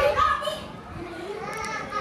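Speech only: children's voices talking and chattering.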